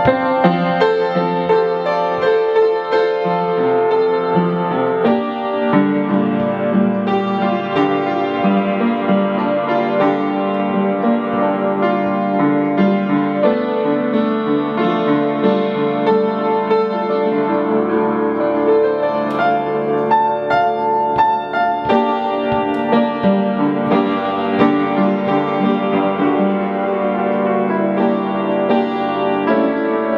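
Upright piano played solo: a blues arrangement of sustained chords with a melody line above them.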